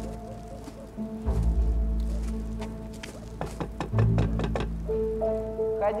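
Soundtrack music with sustained notes over a slow, pulsing low bass. Partway through, a quick run of sharp knocks on a door.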